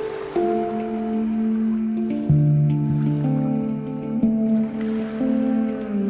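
Handpan played with the fingers: struck steel notes ringing and overlapping, a new note about once a second, with a deep bass note entering about two seconds in.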